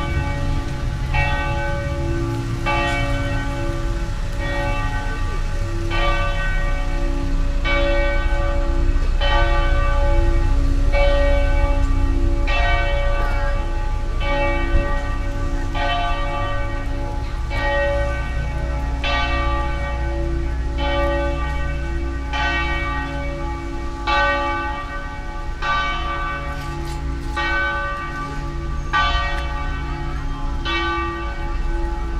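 Church bell tolling steadily, about one stroke every second and a half, each stroke ringing on into the next, over a steady low rumble.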